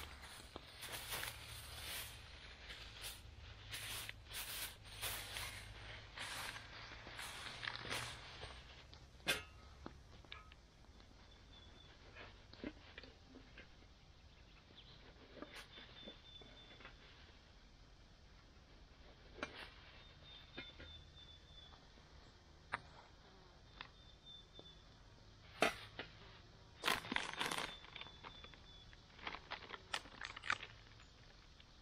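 Plastic food bags and a foil-lined food packet crinkling and rustling as they are handled, in many short crackles for the first several seconds, quieter through the middle, and busy again near the end.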